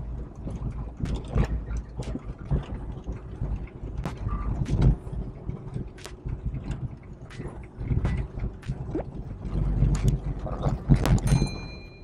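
Car driving on an unpaved dirt road, heard from inside the cabin: a steady low rumble of engine and tyres, with many small knocks and rattles along the way. A short high tone sounds near the end.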